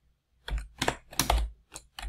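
Computer keyboard typing: a quick run of keystrokes starting about half a second in.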